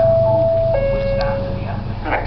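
Public address chime: a two-note falling ding-dong, a higher tone followed by a lower one held for about a second, over a steady low hum.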